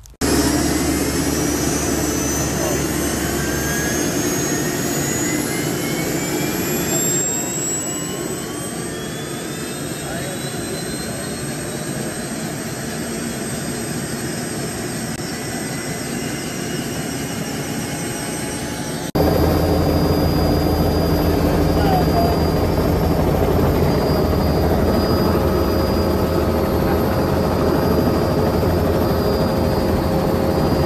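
Helicopter engine starting up in the cockpit with the doors off: a whine rises in pitch over several seconds, then settles into a steady run. About two-thirds of the way in it cuts abruptly to a louder, lower, steady helicopter running sound.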